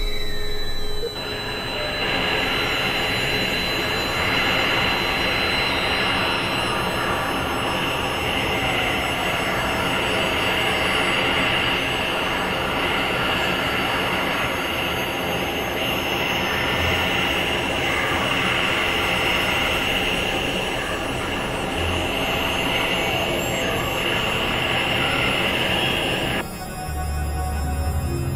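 Experimental electronic noise music: a dense, steady wall of synthesizer noise with a high screeching band, much like train wheels squealing on rails, coming in about a second in.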